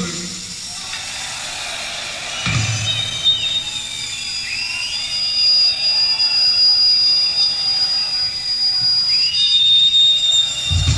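Rock concert audience cheering and whistling between songs, over sustained high electric guitar feedback tones, one held steady for several seconds from about four seconds in. A low thump from the stage comes about two and a half seconds in.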